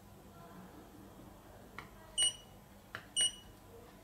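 Two short, high electronic beeps about a second apart from a KomShine handheld optical light source, each just after a soft click of a keypad button being pressed, as the wavelength switch is stepped.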